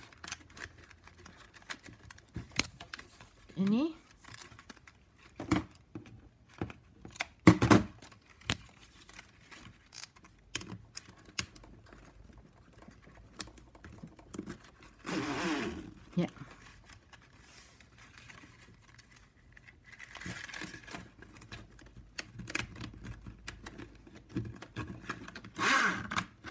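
Stiff 9 mm plastic strapping band being tucked and pulled through a tight woven ketupat by hand: scattered sharp clicks and rubbing of the plastic strips, with a few louder handling noises.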